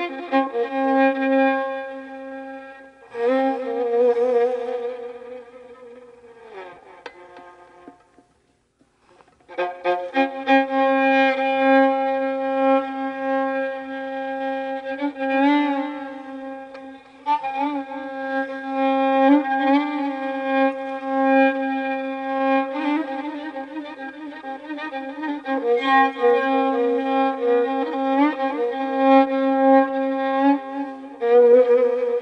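Violin playing a slow Persian improvisation in the Afshari mode: long held notes with vibrato and ornaments. The playing falls silent briefly about eight seconds in, then resumes.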